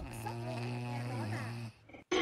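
A sleeping puppy snoring: one long, steady, low-pitched snore that cuts off sharply near the end.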